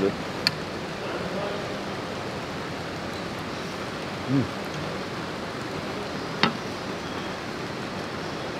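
Steady hiss of restaurant room noise, broken by two light clicks of metal cutlery against a china plate, about half a second in and near six and a half seconds, and a short voice sound from the eater a little after four seconds.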